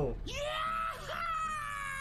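A long, high-pitched drawn-out vocal sound, one held note that slowly falls in pitch, with a brief break about a second in.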